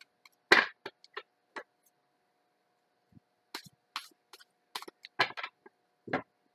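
A deck of tarot cards being shuffled by hand: an irregular run of short taps and snaps of the cards, with two louder ones about half a second in and near the end.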